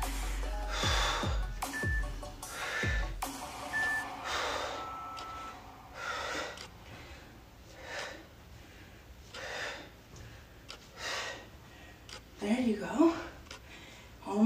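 A woman breathing hard from exertion during resistance-band leg kickbacks: a sharp exhale with each kick, about every second and a half, growing fainter in the second half. Faint background music underneath.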